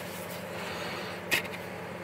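Gloved hands handling and peeling open a leathery ball python eggshell, with one sharp click about two-thirds of the way through, over a steady low hum.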